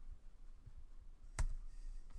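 A single sharp click about one and a half seconds in, over a faint, steady low hum.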